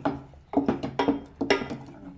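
Wooden spatula stirring thick masala paste in a steel pot, knocking against the pot about twice a second, each knock followed by a brief ring from the metal.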